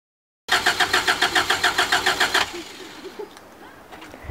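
After half a second of silence, a vehicle's starter motor cranks the engine in an even rhythm of about eight pulses a second for some two seconds, then stops without the engine running.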